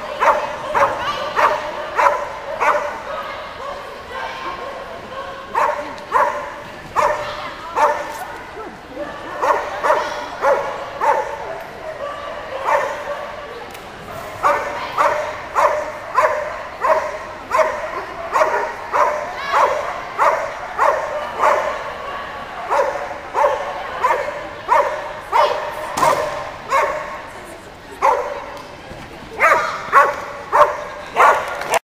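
A dog barking over and over in a steady high-pitched rhythm, about two barks a second, with a few short pauses.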